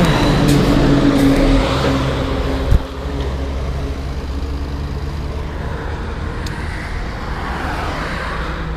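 Road traffic noise: a passing car's engine hums steadily, then a single sharp thump comes almost three seconds in, followed by a steady, slightly quieter rumble.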